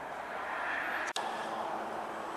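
Steady outdoor background noise with no clear source, briefly cutting out a little past a second in.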